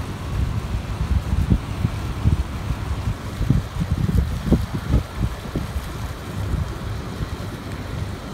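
Wind buffeting the microphone in uneven gusts, a low rumble that swells and drops every second or so.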